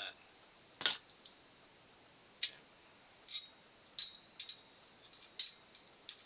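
Aluminium foil over a hookah bowl being punctured with a hole-poking tool: about six short, sharp clicks at irregular intervals, over a faint steady high whine.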